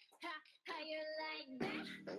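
K-pop dance track playing, its sung vocal line to the fore, dropping out briefly just at the start before the singing resumes.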